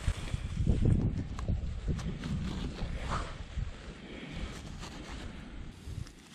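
Rubbing and rustling of soil-caked gardening gloves close to the microphone as a freshly dug coin is rubbed clean, over a low, uneven wind rumble on the microphone.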